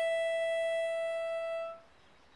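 Harmonica holding one long single note that stops near the end, followed by a brief pause.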